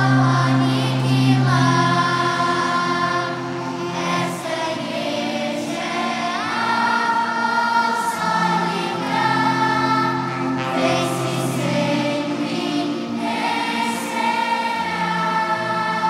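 Children's and youth choir singing a hymn in several parts, holding long notes, with piano and guitar accompaniment.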